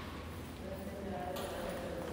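Dining-room background of faint, indistinct voices with light clatter of plates and serving utensils at a buffet counter.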